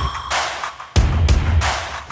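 Cinematic trailer music built on percussive hits: a sudden deep boom about halfway through, then a rising swoosh swelling towards the end.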